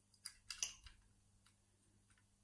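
Faint metallic clicks and scrapes of wire picking tools working against the levers and warding inside a vintage Century four-lever mortice lock: a few in the first second, then near silence.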